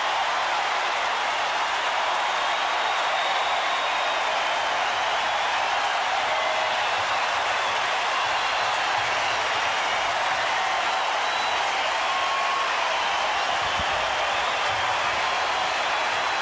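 Baseball stadium crowd giving a standing ovation, a steady, unbroken wash of cheering and clapping.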